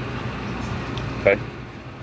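Steady low hum with a hiss of background machine noise, without distinct clicks or knocks.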